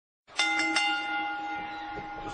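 A bell-like chime struck three times in quick succession, then ringing on and slowly fading.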